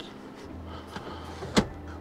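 Sliding centre console lid being moved by hand over a faint low steady hum, with one sharp click about a second and a half in.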